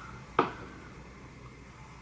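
A single short, sharp click about half a second in, then quiet room tone.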